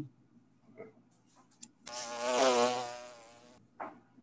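A buzzy, wavering tone that starts abruptly about two seconds in and lasts under two seconds, after a few faint clicks: distorted audio coming through a video call from a participant's faulty microphone.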